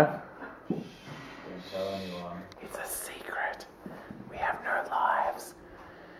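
Quiet, low-level speech and whispering, too soft for words to be picked out: a short stretch of soft voice about two seconds in, then breathy, whispered murmuring until shortly before the end.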